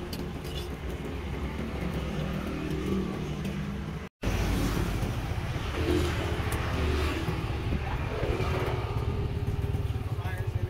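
Motor vehicle engines running on the street, a steady low rumble, with a brief dropout about four seconds in.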